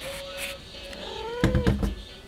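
Burmese cat mewing: a faint, thin, steady mew near the start, then a couple of short mews that rise and fall about a second in. A loud low bump or rumble about one and a half seconds in.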